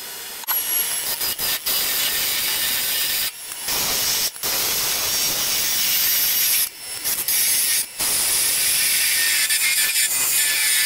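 A turning gouge cutting into a spinning Red Elm blank on a wood lathe, a steady hissing scrape of the edge peeling off shavings. It is broken by several short gaps.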